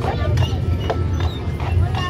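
A draft horse's hooves clip-clopping at a walk on the street as it pulls a horse-drawn streetcar.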